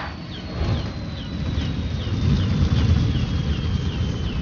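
Film sound effect of a downed aircraft burning: a low rumble under a thin, high whine that falls slowly in pitch, with faint chirps about twice a second.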